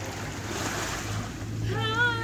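Wind on the microphone over shallow sea water washing against a rocky, pebbly shore, with a steady low rumble. A person's voice calls out in a long held tone near the end.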